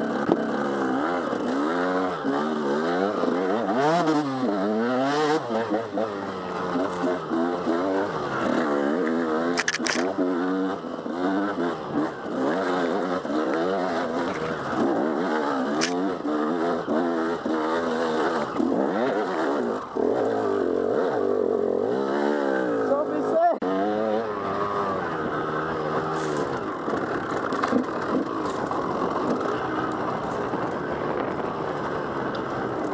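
Enduro dirt bike engine revving up and easing off again and again as the rider works the throttle over a rocky trail, with a few sharp knocks.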